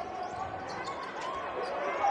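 A basketball bouncing on a hardwood court during live play, with players' voices in the arena.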